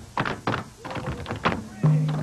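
Tap shoes striking hard pavement in a break in the band's music: a run of sharp, uneven taps. The jazz-funk band comes back in near the end.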